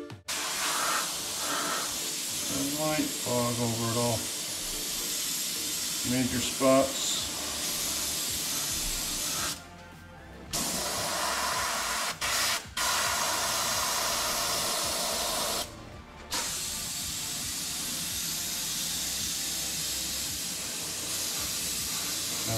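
Airbrush spraying paint onto a redfish taxidermy mount, a steady hiss of air and paint that stops briefly several times as the trigger is let off, about ten seconds in, twice near twelve seconds and again near sixteen.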